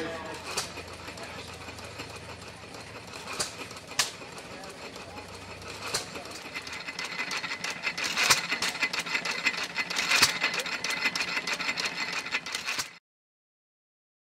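Antique stationary flywheel gas engine running, heard as a fast mechanical clatter that grows louder about seven seconds in, with a sharp pop every couple of seconds. Before that come only a few separate sharp knocks. The sound cuts off suddenly shortly before the end.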